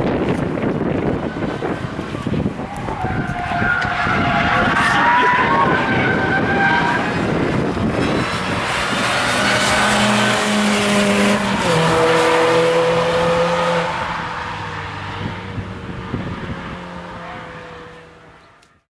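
Car tyres squealing in long, wavering squeals as a car is driven hard through track corners. It is followed by a car engine held at high revs, its pitch slowly falling as it fades away.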